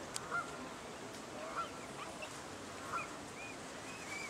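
Juvenile swans (cygnets) giving short, scattered peeping calls, about six brief arched calls spread over a few seconds.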